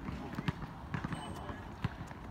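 A few short thuds of a basketball on an outdoor asphalt court, the sharpest one near the end.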